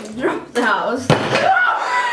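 A chocolate house made of milk-chocolate bars dropped onto a table, hitting with one sharp crack about a second in as it breaks apart, amid excited shrieks.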